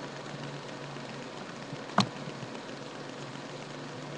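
Steady background hiss with a faint low hum, broken by a single sharp click about two seconds in.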